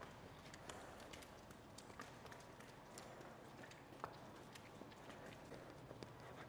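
Near silence with faint, scattered clicks and knocks: footsteps on a slatted concrete shed floor.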